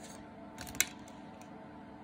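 A single sharp click a little under a second in, with a few faint ticks just before it, over quiet room tone.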